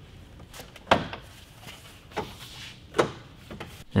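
Hard plastic truck grille being handled: four or five sharp knocks and clunks, the loudest about a second in.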